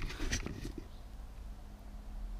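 Brief soft rustling and clicking of gloved hands handling parts in the first second, then only a faint steady low hum.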